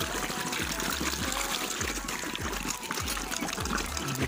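Water splashing and trickling as a crowd of carp, an orange koi among them, churn the surface while feeding on floating pellets.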